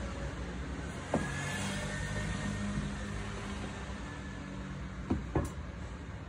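A few light knocks of a dangled sneaker, one about a second in and two close together near the end, over a steady low rumble with a faint hum in the background.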